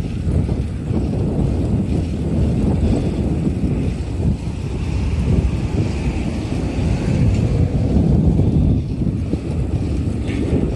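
Wind rushing over the microphone of a camera carried on a moving bicycle: a steady low rumble.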